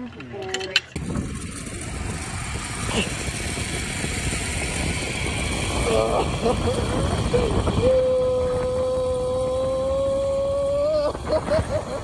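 Riding a zip line: a steady rush and low rumble of the trolley running along the steel cable, with wind on the microphone, starting suddenly about a second in. About six seconds in comes a wavering cry, then a long steady high tone lasting about three seconds that rises slightly at its end.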